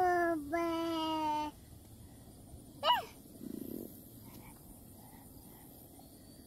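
Drawn-out pitched vocal calls: one that arches up and falls away, running straight into a steady call about a second long, then a short rising-and-falling call about three seconds in.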